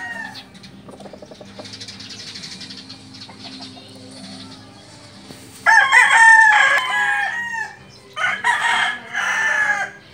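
Rooster crowing: one long crow starting a little past halfway, followed by two shorter calls near the end.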